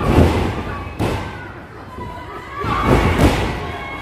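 Wrestlers' bodies and feet thudding onto a wrestling-ring mat: heavy thuds near the start, another about a second in, and a quick run of them around three seconds in, over crowd voices.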